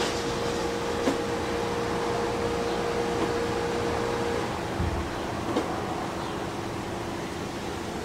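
Electric box fan running, a steady whooshing hum that drops a little in level about halfway through.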